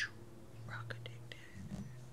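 A woman's short intake of breath, then faint mouth clicks over a low steady hum.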